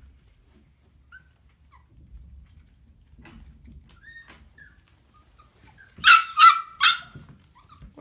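Puppies giving a few faint whines, then three loud, high-pitched yips in quick succession about six seconds in.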